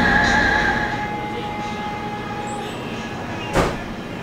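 Ship's engine drone heard inside a passenger ferry's cabin: a steady low hum with a thin whine above it that fades out after about two seconds. A single sharp knock comes near the end.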